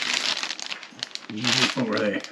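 Crinkling of a thin clear plastic package being handled, a bead garland sealed in its bag, with a short murmured voice near the end.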